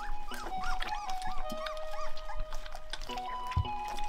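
Young Weimaraner puppies whimpering in several short, high, rising-and-falling squeaks, mostly in the first half, over background music with long held notes.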